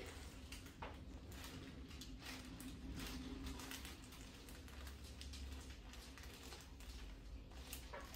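Quiet room tone: a low steady hum with faint soft rustles and small clicks, one a little stronger about a second in.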